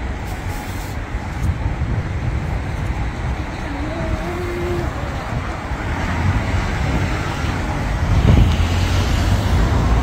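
A steady low outdoor rumble that swells about eight seconds in, with a faint brief tone around four seconds in.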